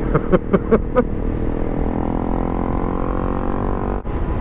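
Honda CRF250 Rally's single-cylinder engine pulling under throttle, its pitch climbing steadily for about two seconds and then levelling off near the end.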